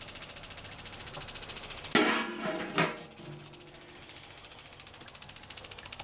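Small electric pump feeding waste motor oil into a distiller, running with a steady, rapid buzz. A brief louder noise comes about two seconds in.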